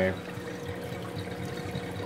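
Water running steadily down a 1.25-inch Schedule 40 PVC Durso overflow through its slotted strainer, over a low steady hum. At 655 gallons an hour the overflow is swamped, with water riding up on the strainer slots: it is barely keeping up.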